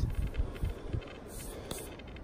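A fingertip rubbing soil off a freshly dug coin held in the palm: a soft, scratchy rustle with a few small ticks, and a low thump of microphone handling at the very start.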